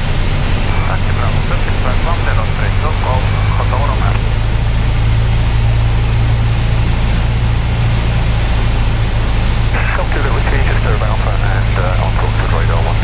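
Piper PA-28 light aircraft's piston engine and propeller droning steadily, heard inside the cockpit in cruise flight. Indistinct voices come briefly over it in the first few seconds and again near the end.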